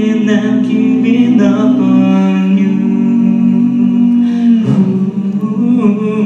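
Five-voice a cappella group singing sustained, wordless chords over a low bass voice, the harmony shifting to new chords about two seconds in and again near five seconds.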